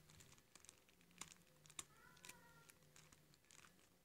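Near silence: room tone with a few faint clicks and soft rustles of handling.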